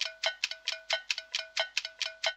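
Theme music reduced to a rapid run of one repeated struck note, about five strikes a second, each ringing briefly.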